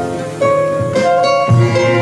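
Balkan band playing live, an instrumental passage with no singing: a plucked-string lead over clarinets and double bass, the melody moving in held notes. The deep bass drops out about half a second in and comes back near the end.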